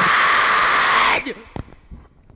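Ending of a house music track: the kick drum has dropped out, leaving a steady hiss-like synth noise that cuts off suddenly about a second in, followed by a few faint clicks.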